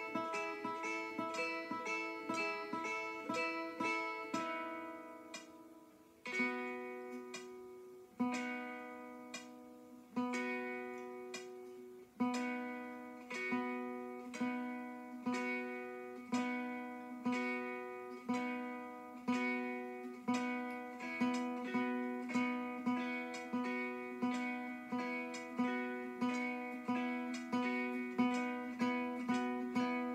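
Classical guitar fingerpicked, single plucked notes rather than strums. A quick run of notes opens, then single notes ring out about two seconds apart, settling into a steady picked pattern of about two notes a second.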